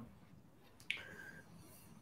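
Near silence with a single faint click a little under a second in.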